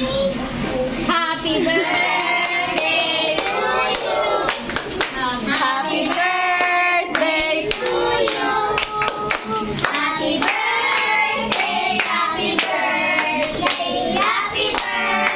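A group of children singing a song together while clapping their hands along in time.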